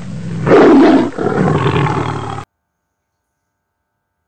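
A loud, deep animal-like roar laid in as a sound effect, in two long bursts, the first the loudest, cutting off suddenly about two and a half seconds in.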